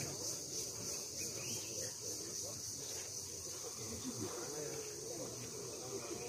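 Indistinct voices of several people talking at a distance, over a steady high-pitched insect drone.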